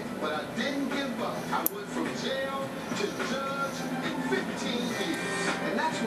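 Television playing in the background: voices and music.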